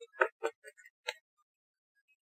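Tarot cards being handled by hand: about six short clicks and snaps of card against card in the first second or so.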